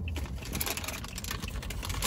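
Plastic candy packaging crinkling: rapid, irregular clicks and crackles over a steady low hum inside a parked car.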